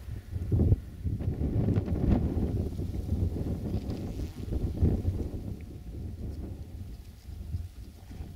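Wind buffeting the microphone: an uneven low rumble in gusts, easing off in the second half.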